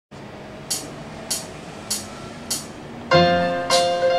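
Four evenly spaced high ticks, about 0.6 s apart, as a count-in, then about three seconds in an electronic keyboard in a piano voice starts a ragtime with bass notes and chords.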